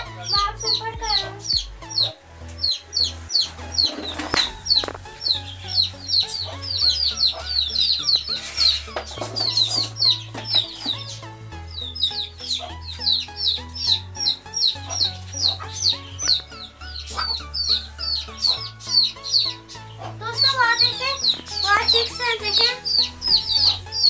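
A brood of young chicks peeping non-stop, many short high falling peeps, several a second, over background music with a low bass line.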